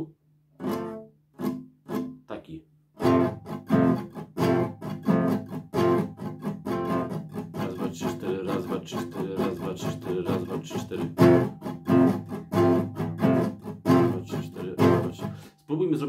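Nylon-string classical guitar strummed in a steady rhythm, with some strokes muted by lifting the fretting fingers slightly off the strings so a percussive click sounds instead of the chord. A few sparse strokes come first, then continuous strumming from about three seconds in until just before the end.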